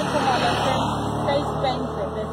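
Vehicle engine idling, a steady low hum.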